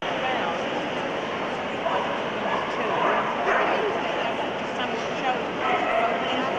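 A Samoyed gives a few yips and whines about two to three seconds in, with another near the end. Steady chatter from a crowded show hall runs underneath.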